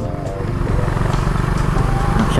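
Motorcycle engine running steadily while riding at a cruise, heard from a handlebar-mounted camera.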